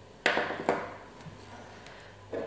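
Small objects knocking on a hard tabletop as they are handled: two light knocks about half a second apart, the first with a short ring, then a few faint ticks.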